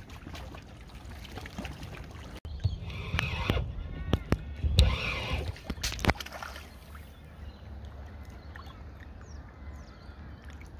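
Hooked bream splashing at the water's surface as it is reeled in toward the bank. The splashes cluster in the middle few seconds, with several sharp slaps, then the water settles to a quieter, even lapping.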